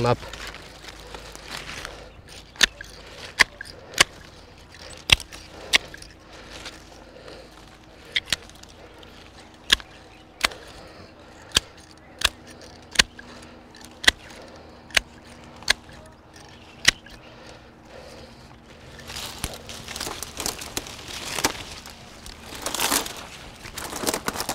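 Hand pruning shears cutting grapevine canes: a string of sharp clicks about one a second. Near the end comes a few seconds of rustling leaves and canes as cut wood is pulled out through the vine.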